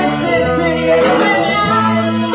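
Live band music: a woman singing lead into a microphone over electric guitar, bass guitar and drum kit.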